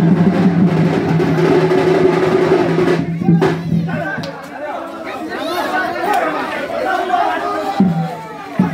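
Sambalpuri baja band music, fast drumming over a held low note, playing loud and then stopping a little before halfway through. Crowd voices and chatter follow.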